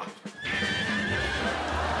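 A horse whinny sound effect, a neigh with a quavering pitch lasting about a second, played over background music.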